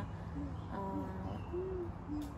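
Soft, low hooting notes, a few in a row with one longer rising-and-falling note near the end, like a bird's call.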